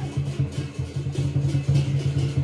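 Lion dance percussion band, drum with clashing cymbals and gong, playing a fast, even beat to accompany the lion.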